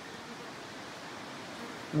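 Steady hiss of wind rustling the leaves of a forest, even and unbroken.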